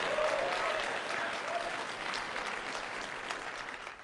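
Audience applauding, a dense patter of many hands that dies away toward the end.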